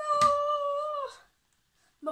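A boy's voice imitating a dog's howl ("bauuu"): one held call about a second long, steady in pitch, then sliding down as it ends.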